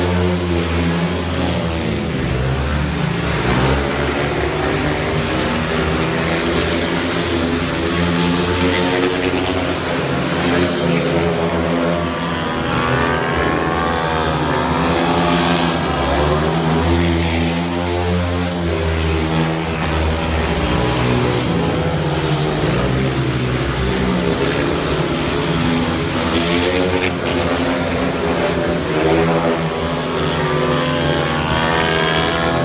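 Several 500cc single-cylinder methanol-burning speedway motorcycles racing round a dirt oval. Their engine note rises and falls again and again as the riders go into and out of the bends.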